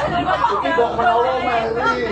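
Speech only: actors' voices in a rapid spoken exchange of stage dialogue.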